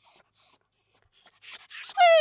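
Dog whimpering in distress: about seven short, very high-pitched whines in a row, each falling slightly in pitch, the sound of a sick dog.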